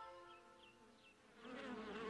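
Cartoon buzzing of bees around a hive. It fades in about one and a half seconds in, as a wavering drone, after a few held musical notes die away.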